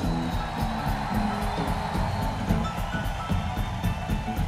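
Live rock band playing an upbeat shuffle, with piano featured as the keyboard player is introduced; many short, bright notes over a steady low beat.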